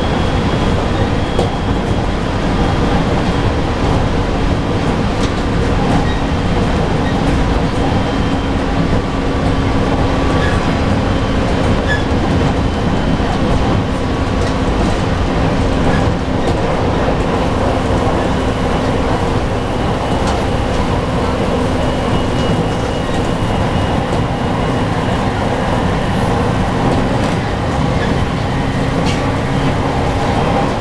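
JR Kyushu 815 series electric train running at steady speed, heard from inside at the front of the train: a constant rumble of wheels on rails with a faint steady hum running through it.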